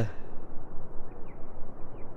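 Steady outdoor background noise, an even rushing haze, with a few faint short falling chirps about a second in.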